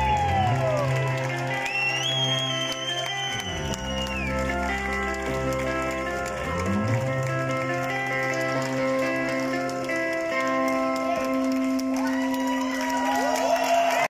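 A live rock band plays electric guitars and bass, holding long sustained notes, with high sliding notes rising and falling over them.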